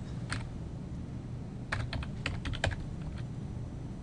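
Computer keyboard being typed on: a single keystroke, then a quick run of about eight keystrokes a little under two seconds in and one more shortly after, as digits of an IP address are entered. A low steady hum runs underneath.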